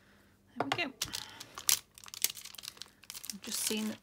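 Clear photopolymer stamps and their plastic carrier sheet being handled and pressed back into place, the thin plastic crinkling and clicking, busiest from about a second in.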